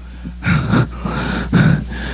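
A man breathing heavily into a handheld microphone between phrases of an impassioned sermon, with several sharp breaths in quick succession over a steady low hum.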